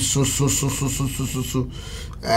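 A man's voice in quick, short, evenly spaced pulses with a breathy hiss above them, stopping about a second and a half in.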